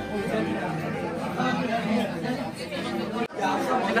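Many people talking at once: the chatter of a crowded restaurant dining room, briefly cutting out about three seconds in.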